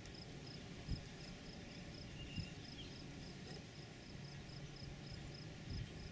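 Faint cricket chirping in a steady, even rhythm of about three chirps a second over low outdoor background noise, with two soft knocks, one about a second in and one midway.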